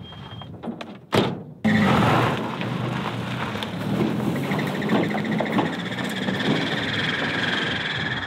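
A pickup truck's door slams shut about a second in, followed by a sudden, steady loud noise that holds to the end.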